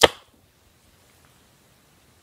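A single sharp knock as a hand grabs the camera, dying away within about a quarter second. A faint hiss follows.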